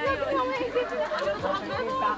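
Only speech: several people talking over one another in a group.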